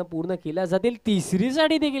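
A commentator talking without a break.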